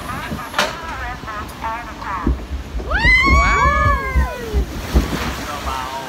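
Log flume boat running down its water channel, with rushing water and wind buffeting the microphone; about three seconds in, riders let out a drawn-out cry that rises and then falls.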